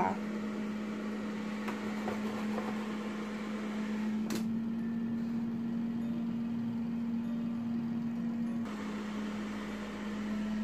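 Philips air fryer running, its fan giving a steady hum, with a single sharp click about four seconds in.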